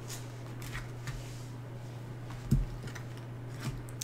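Quiet handling of tarot cards as they are drawn and laid out: a few light clicks and rubs, with one soft low thump about two and a half seconds in, over a steady low hum.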